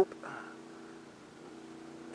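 Honda VFR800's V4 engine running steadily at road speed, heard as a faint, even low hum.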